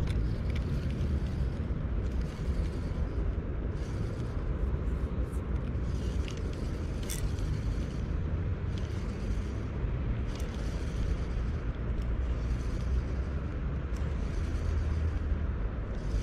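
Wind buffeting the microphone: a steady low rumble, with a few faint clicks now and then.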